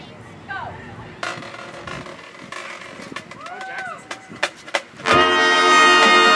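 A few scattered voices and sharp clicks, then about five seconds in a marching band comes in all at once with a loud, sustained brass chord.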